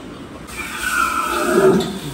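A water buffalo bellowing: one loud call that starts about half a second in and swells to its peak near the end, falling in pitch.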